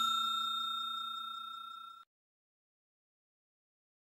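A bright bell-like 'ding' sound effect from a like-and-subscribe animation, ringing out and fading, then cutting off about two seconds in.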